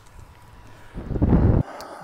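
Wind buffeting the phone's microphone: a faint low rush, then a loud gust of rumbling about a second in that lasts half a second and stops abruptly.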